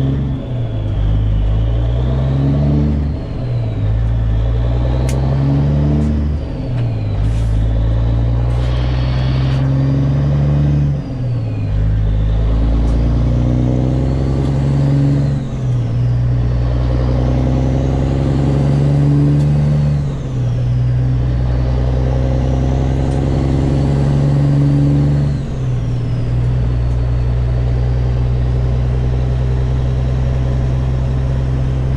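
Semi truck's diesel engine heard from inside the cab, accelerating up through the gears. The engine note climbs in each gear and drops sharply at each of about seven shifts, each gear held longer than the last, then settles to a steady cruise. There are a few sharp clicks in the first ten seconds.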